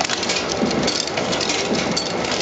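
Tullio Giusi Vanguard HPK laser button etching machine running: a continuous dense rattle of many small clicks over a steady mechanical noise.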